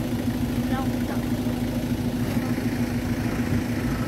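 Small automatic scooter engine running steadily at low speed, holding one even pitch, with a brief voice just under a second in.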